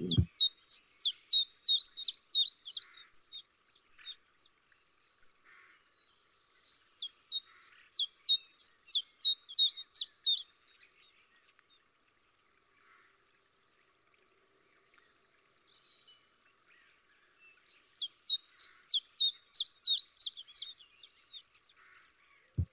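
Recording of a common chiffchaff singing its 'chiff-chaff' song, the bird saying its name: three runs of quick, high repeated notes, about three a second. There is a short pause after the first run and a longer gap of several seconds before the last.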